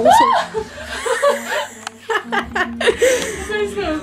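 A woman gasps, then laughs in short bursts.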